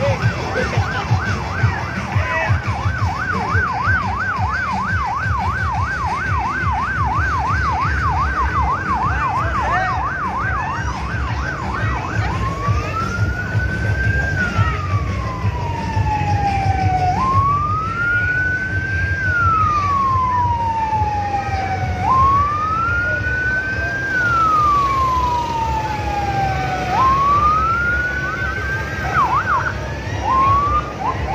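Electronic vehicle siren in yelp mode, a rapid up-and-down warble about three times a second, switching about twelve seconds in to a slow wail that rises and falls about every five seconds, then back to a quick yelp near the end. A steady low rumble runs underneath.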